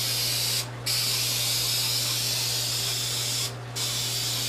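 Aerosol spray paint can hissing steadily as a thick wet coat of gold paint goes onto a car hood. The spray stops twice for a moment, once about half a second in and once near the end.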